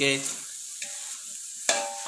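Grated carrot halwa frying in ghee in a large pot, sizzling steadily, with a sharp click of the spatula against the pot near the end. The moisture has cooked off and the halwa has begun to release its ghee.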